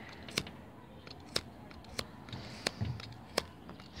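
A lighter struck again and again, a sharp click roughly every second, about five times.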